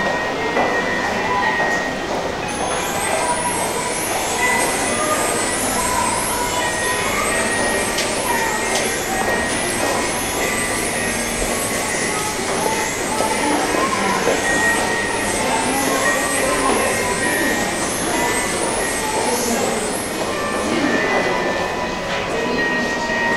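A high, glittering sound effect from an interactive snow-globe window display, repeating quickly, about twice a second, from about three seconds in until near the end, over the steady murmur of a busy crowd's voices.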